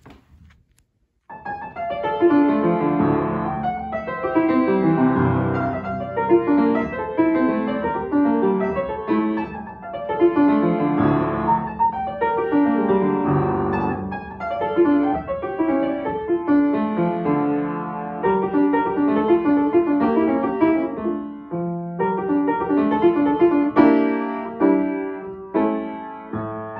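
Upright piano played solo, starting about a second in: a recital piece built on quick runs that sweep up and down the keyboard again and again.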